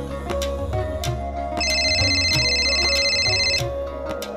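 Background music with a steady low beat, over which a telephone rings with a high electronic trill for about two seconds, starting a little before halfway through.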